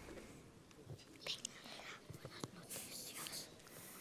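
Faint, near-quiet pause with soft whispering and a few small scattered knocks.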